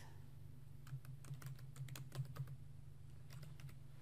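Typing on a computer keyboard: a quick run of faint key clicks that starts about a second in and stops shortly before the end, over a steady low hum.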